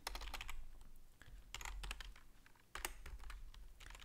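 Computer keyboard being typed on: faint key clicks at irregular intervals.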